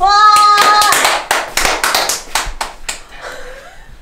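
An excited cheer of "wa!" held for about a second, then quick hand clapping that trails off about three seconds in.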